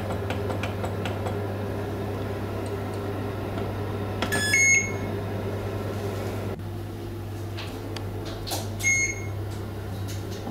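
Electronic oven control panel beeping twice as its timer buttons are pressed to set a 30-minute bake: two short high beeps, about four seconds apart, over a steady low hum.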